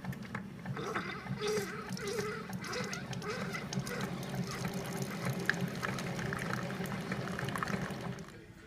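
Keurig 2.0 single-cup coffee maker brewing: a steady low hum with a hiss as a thin stream of coffee pours into a mug.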